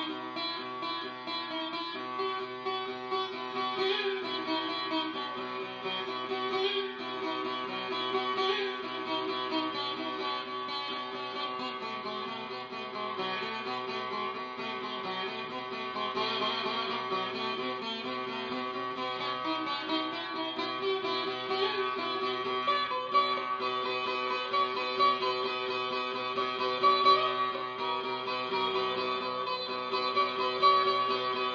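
Sitar played solo by a beginner: plucked notes ringing over a bed of steady, sustained string tones.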